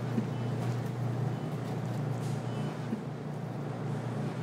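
A steady low hum of supermarket ambience, even in level throughout.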